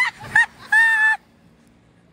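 A woman's high-pitched shrieking laughter: two short whoops, then a longer held squeal that cuts off abruptly a little over a second in, leaving only faint background.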